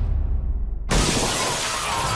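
A low rumble, then about a second in a sudden loud crash that carries on as a dense, bright hiss.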